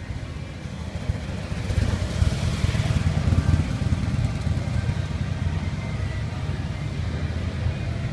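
A motorcycle engine running, a low pulsing rumble that grows louder about two seconds in and then holds steady.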